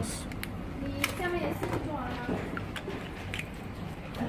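Faint, indistinct voice in the background over a low steady hum, with a few light clicks.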